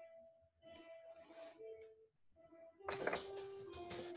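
Children's piano practice heard faintly through a participant's video-call microphone: slow, separate notes, the loudest struck about three seconds in.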